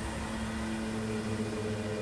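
A steady low hum with a few faint held tones, one of which fades out about a second and a half in.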